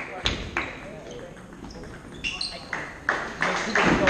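Table tennis ball bouncing with sharp, evenly spaced clicks at the start and again from about three seconds in, as a player bounces it before serving.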